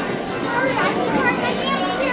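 Children's voices and unclear overlapping chatter in a busy dining room.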